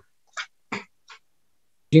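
A woman's brief laugh heard through a video call, three short chuckles with silence between them.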